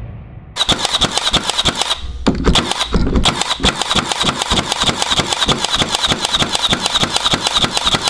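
Milwaukee M18 FUEL 18-gauge brad nailer (2746-20, Gen 2, nitrogen air-spring drive) firing brads into hardwood in quick succession, several shots a second, starting about half a second in with a short break about two seconds in.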